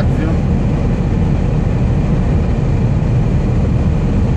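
Steady low rumble of a heavy truck's diesel engine and road noise inside the cab while cruising on the highway.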